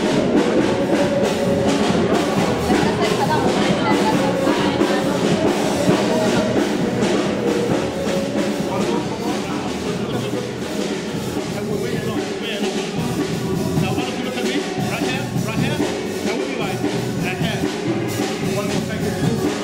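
Background music with a drum beat, laid over the footage.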